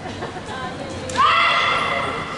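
A high-pitched kiai shout from a naginata performer, a young woman's voice that starts about a second in and is held as one long call.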